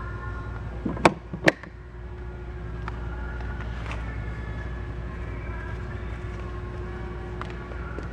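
Two sharp plastic knocks about half a second apart, about a second in, as the Sea-Doo GTS 130's glove compartment lid is shut and latched. A steady low hum carries on underneath.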